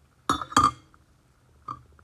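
Two sharp clinks of hard kitchen items knocking together, a quarter second apart and ringing briefly, followed by a fainter tap near the end.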